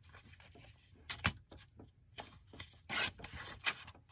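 Paper being handled and rustled by hand on a craft table, with a sharp tap about a second in and louder rustles near the three-second mark.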